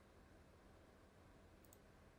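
Near silence: faint room tone with a low electrical hum, and a few faint computer-mouse clicks, one at the start and a quick pair about one and three-quarter seconds in.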